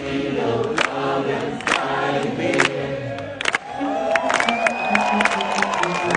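Live band with saxophone, electric bass and drums playing in a hall, heard from within the crowd, with voices singing along. A sharp hit lands about once a second, and a long held high note comes in about four seconds in.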